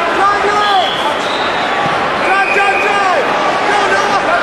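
Several voices shouting and calling out at once over the general din of a crowded gym, as coaches and spectators yell during a youth wrestling bout.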